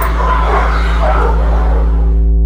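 Faint dog barks and yips over a steady low droning tone.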